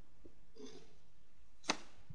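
Quiet room tone, with a brief faint murmur about half a second in and one short, sharp click near the end.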